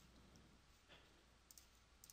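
Near silence, with two faint computer mouse clicks about one and a half seconds in.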